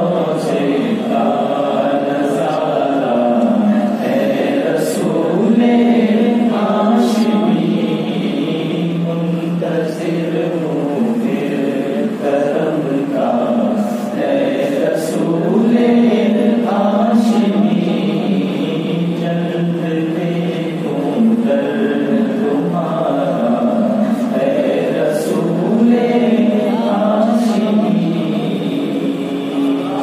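A man singing an Urdu naat through a microphone, without instruments, in long held and ornamented phrases.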